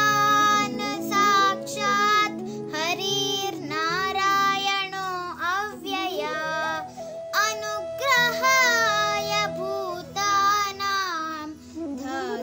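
Child singing a devotional shloka in held, wavering phrases over a steady instrumental drone.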